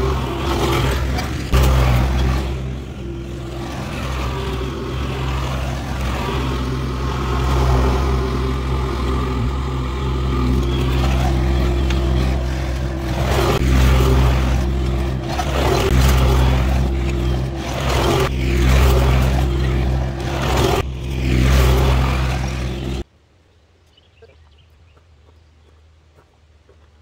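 Vermeer mini skid steer's engine running, swelling and easing with the load as it scrapes up raked debris, with a few short knocks from the attachment. The sound cuts off suddenly near the end.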